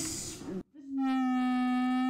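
A single steady pitched tone with a stack of overtones, starting suddenly after a moment of silence and held unwavering for about a second and a half before cutting off.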